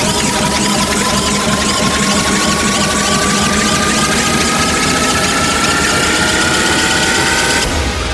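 Hardcore techno build-up: a single synth tone rises slowly and steadily over a dense wall of distorted noise, then cuts off suddenly near the end.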